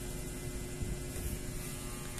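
Steady electrical hum with a background hiss: room tone.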